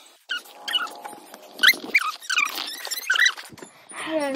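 An animal's short, high-pitched whining squeaks, about seven calls spread across the four seconds, each bending up and down in pitch.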